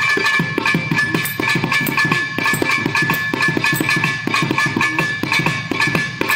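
Thavil drum solo: rapid, dense strokes on the thavil's two heads, the deep booming head and the sharp fingered head, in a fast continuous rhythmic passage.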